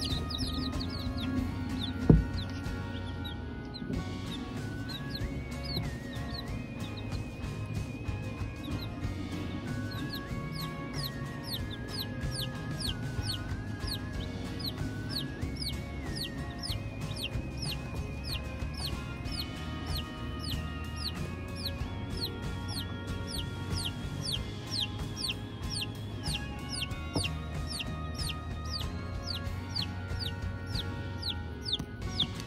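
Polish chicks peeping: short, high, falling peeps, a couple or more a second, over background music. A single thump about two seconds in.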